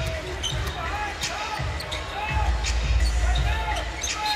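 A basketball being dribbled on a hardwood court, with irregular knocks and short sneaker squeaks. Arena crowd noise underneath grows louder about halfway through.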